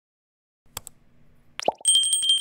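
Subscribe-button sound effect: after a short silence, a mouse click, then a quick rising pop, then a bicycle-style bell starting to ring with a fast trill near the end.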